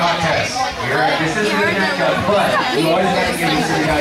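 Several voices talking and calling out over one another, with no clear words, echoing in a large hall.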